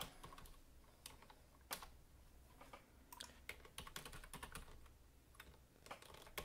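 Faint typing on a computer keyboard: irregular keystrokes with short pauses between bursts.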